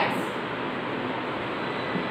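Steady, even background hiss of room noise with no distinct events in it.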